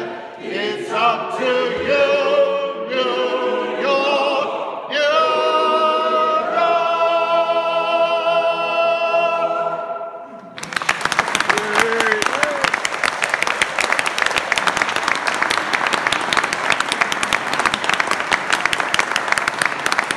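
A cappella choir singing the closing bars of the song, ending on a long held chord; about ten seconds in, the audience breaks into applause that carries on to the end.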